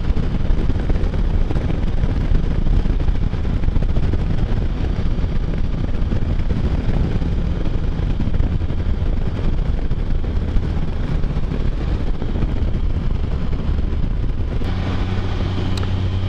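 Can-Am Spyder three-wheeled motorcycle running at road speed, its engine under steady wind rush on the microphone. The engine note comes through a little more strongly near the end.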